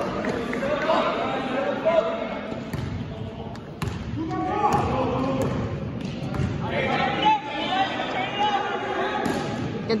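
A basketball bouncing on a gym floor during a game, with a few sharp knocks, under players and spectators calling out in an echoing hall.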